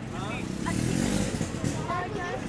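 A motor vehicle engine running close by, its low drone swelling about halfway through, under scattered voices.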